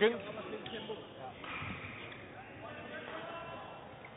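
Faint, distant voices talking over low room noise in a large, echoing sports hall.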